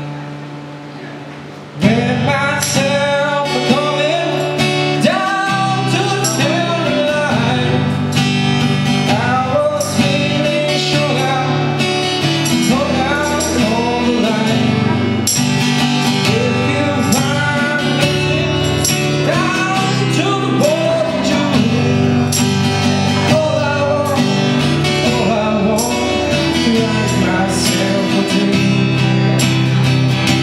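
Live acoustic guitar strummed with singing. A single chord rings for the first couple of seconds, then the song comes in fully with voice and steady strumming.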